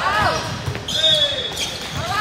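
Players shouting in a large, echoing gym as a volleyball rally ends, with a referee's whistle blown once, a steady high note of about half a second, about a second in.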